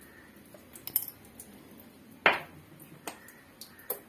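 A metal spoon clinking against a stainless steel bowl: four sharp clinks, the loudest a little past halfway.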